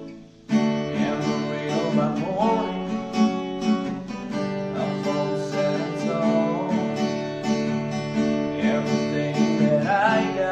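Acoustic guitar strummed in a steady rhythm, restarting sharply after a short gap about half a second in. A man's voice singing joins over the chords.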